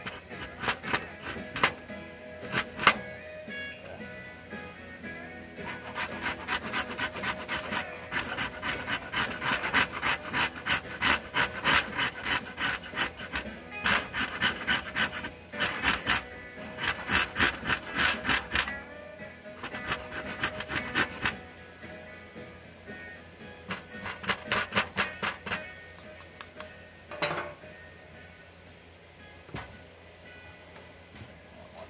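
A resinous fatwood stick scraped with a flat blade, several quick rasping strokes a second in long runs with short pauses, throwing off shavings and dust. The strokes thin out and stop near the end.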